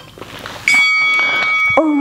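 A single steady electronic beep starts suddenly and holds one even tone for about a second before cutting off.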